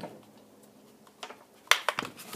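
A few short, sharp clicks and knocks, starting about a second in and loudest near the end, as the detached string-trimmer engine is gripped and lifted off the workbench.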